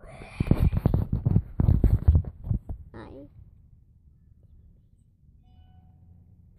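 A burst of close knocks and rustling mixed with a voice for the first two and a half seconds, then a quiet, steady low rumble inside a car's cabin.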